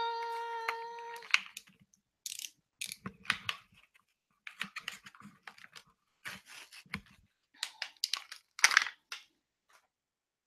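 Plastic packaging of a glue tape roller crinkling and tearing in irregular bursts as it is unwrapped by hand. It opens with a steady high tone lasting about a second and a half.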